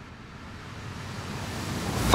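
A soft rushing noise, with no tune in it, that grows steadily louder.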